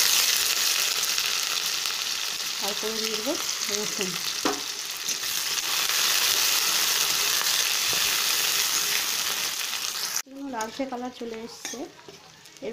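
Sliced onions sizzling in hot oil in a metal kadai, stirred with a spatula. The sizzle is loudest at the start and cuts off suddenly about ten seconds in, leaving a quieter stretch with a voice near the end.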